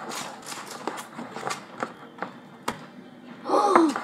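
Small sticky clicks and taps of homemade slime being stirred and pulled apart by hand. A girl gasps near the end.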